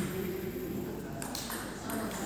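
Table tennis balls ticking off bats and tables, a few short sharp clicks in the second half, over a murmur of voices in the hall.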